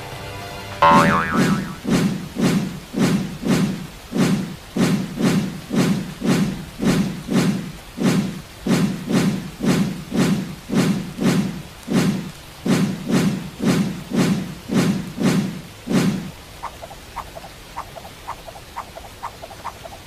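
A rapid, evenly spaced run of cartoon thud effects for mud balls being thrown and hitting, about two or three a second, stopping suddenly a few seconds before the end.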